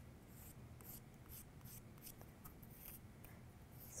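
Faint strokes of a stick of soft pastel chalk rubbed lightly on cardstock petals, about two or three a second.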